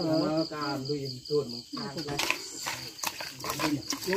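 A person's drawn-out voice for the first two seconds, then quick clicking and scraping as the blood, herbs and chopped ingredients are stirred in an aluminium bowl. A steady high chirring of crickets underneath.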